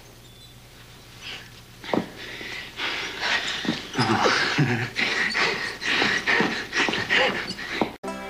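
Breathy, effortful grunts, snorts and gasps from a man and a woman, in irregular bursts starting about two seconds in.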